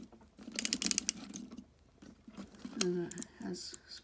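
Plastic toy turret of a Transformers tank-mode figure being turned by hand: a quick run of small plastic clicks in the first half, from a ratcheting joint.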